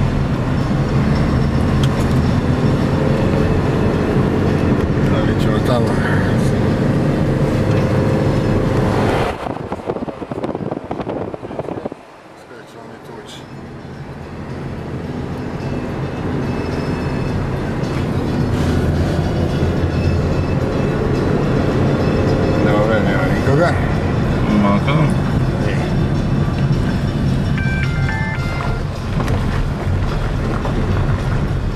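Car engine and road noise heard from inside the cabin, a steady low rumble. About nine seconds in it falls away sharply for a few seconds, then builds back up steadily as the car pulls on again.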